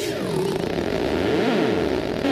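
Produced sound effect in a sound-system jingle: a whooshing, engine-like fly-by sweep whose pitches glide down and then back up, with hiss over it.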